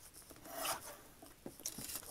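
A desktop paper trimmer cutting a small sheet of paper: a soft scraping swish that peaks just over half a second in. A few light clicks follow near the end as the trimmer arm is lifted and the piece handled.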